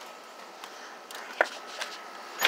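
Faint handling noise from scrapped computer cases being shifted, with one short sharp click about one and a half seconds in and a smaller one just after.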